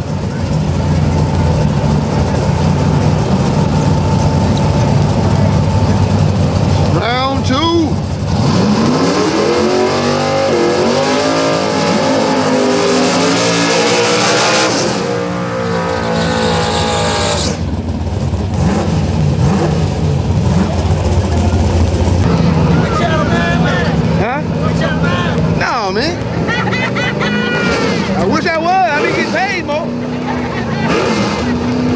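Drag-racing engines idling loudly, then a Mustang coupe's burnout: the engine revs up in repeated rising sweeps with tyre-spinning hiss in the middle, ending abruptly. Afterwards the cars idle at the starting line with short rev blips as they stage.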